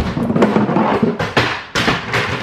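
Ice cubes cracking loose as a plastic ice cube tray is twisted, a run of crackles with several sharper snaps.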